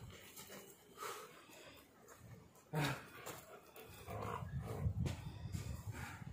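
Pit bull–bully mix dog tugging on a rope toy in a tug-of-war game, with one short loud sound about three seconds in and a low, rough rumble, typical of play growling, through the last two seconds.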